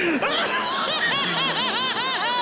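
A person laughing in a quick run of short 'ha-ha' pulses, about six or seven a second, strongest in the second half.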